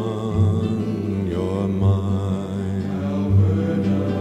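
Folk ballad sung by a male voice with instrumental accompaniment: a long held sung note with vibrato fades out about a second in, and the accompaniment carries on with a low bass note about every second and a half.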